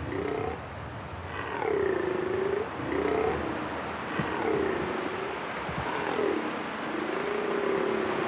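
Corsican red deer stag belling in the rut: a series of about seven short, hoarse roars, each rising then falling in pitch. This is the rutting call by which the stag asserts his territory and signals to hinds.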